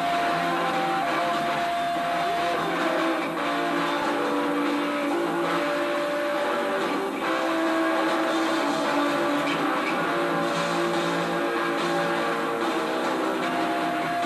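Rock band playing live: electric guitars holding sustained notes over bass and drums. The sound is dense and continuous, with little low bass.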